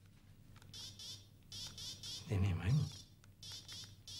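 Buzzing electronic sound effects from a handheld video game, coming in short bursts, with a brief voice about halfway through.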